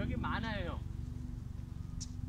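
A short stretch of a person's voice in the first second, over a steady low rumble.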